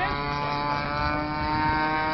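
Radio-controlled model airplane flying aerobatics overhead, its motor and propeller running as a steady, even-pitched drone.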